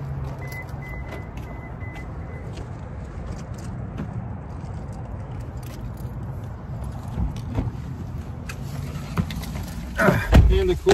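A car's engine running with a steady low hum, while its warning chime beeps about five times in the first couple of seconds. Scattered clicks and knocks of people getting settled in the car run over it.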